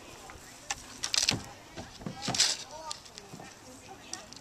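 Wood chips rustling and scraping in and against plastic sand buckets as a toddler handles them, in two short swishy bursts, one about a second in and one just past the middle.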